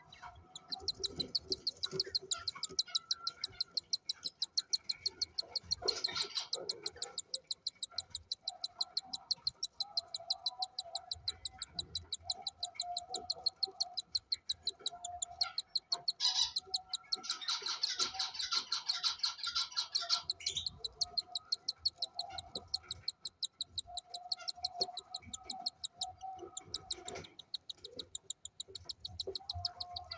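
Five-day-old cockatiel chick food-begging as an adult feeds it: a fast, even run of high, raspy cheeps, several a second, with brief rustling about six seconds in and again for a few seconds around the middle.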